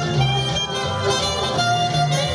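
Saxophone played live, holding and moving between sustained melody notes over a recorded backing track with a repeating bass line.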